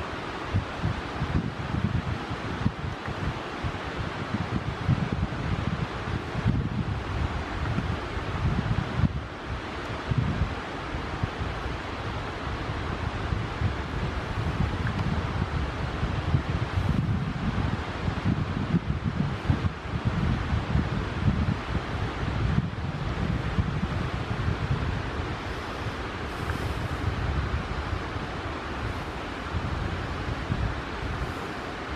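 Wind buffeting the microphone in uneven gusts, with a low rumble over a steady rushing hiss.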